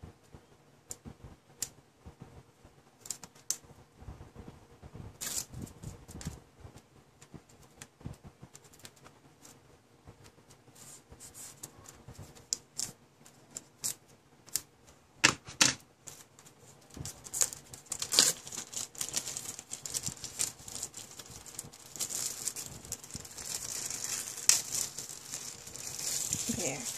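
Small craft scissors clicking and snipping as they cut open the cellophane wrap on a stack of paper journal cards. Over the last several seconds the plastic wrap crinkles and rustles more densely as it is pulled open and the cards are handled.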